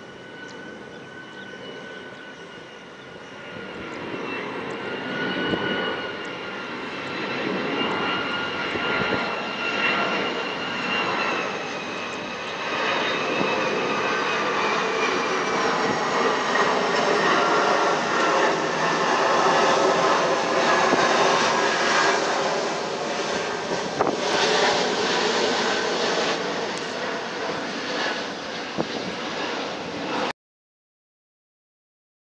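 Boeing 757 freighter's twin jet engines passing low overhead on landing approach, gear down. A high whine slowly falls in pitch as the engine noise grows louder over the first several seconds, reaching its loudest past the middle and staying loud to the end.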